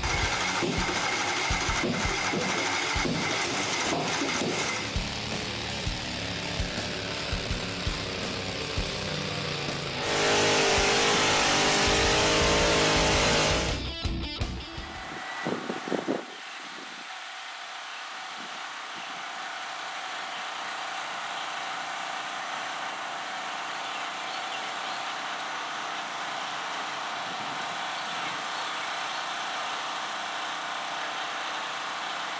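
Music mixed with modified garden pulling tractor engines running under load, with a loud rushing stretch about ten seconds in. About sixteen seconds in it cuts abruptly to a steady, quieter outdoor hum of engines idling.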